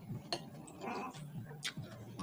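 Small clicks and taps of fingers and food against ceramic plates while eating by hand, with a short wavering call about a second in.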